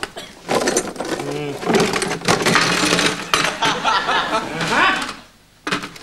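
Crockery and metal clinking on a serving tray as a cover is lifted off it and the things under it are handled, with a few sharp clinks under voices.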